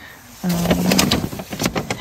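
A short hummed "um", then a run of close, crackly rustling of fabric, in many short strokes, during the pause in speech.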